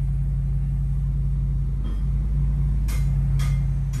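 A vehicle engine idling steadily, an even low hum, with two faint clicks about three seconds in.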